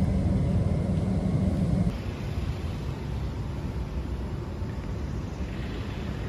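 Steady low rumble of ambient background noise with no distinct events. It changes character and drops a little at a cut about two seconds in.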